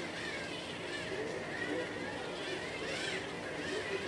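Small electric facial cleansing brush running steadily as it scrubs lathered skin: a motor whirr with a faint wavering whine.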